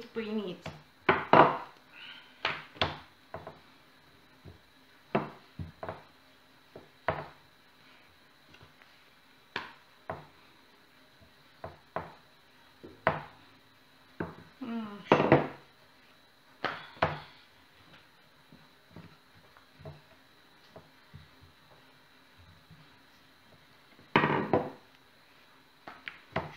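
Irregular wooden knocks and clicks of a wooden rolling pin on a wooden cutting board as dough is rolled out, with short stretches of talking near the start, midway and near the end.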